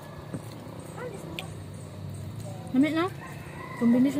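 A rooster crowing once about three seconds in: a steeply rising start, then a thinner held note.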